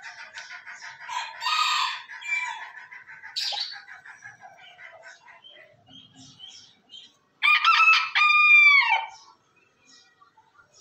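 A Millefleur Booted Bantam rooster crows once, a loud crow of under two seconds that starts about seven and a half seconds in, holds one pitch and drops off at the end. Before it, small birds chirp over and over, with a louder flurry of calls early on.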